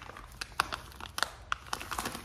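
Plastic dog-treat bag crinkling as it is handled, with a series of sharp crackles.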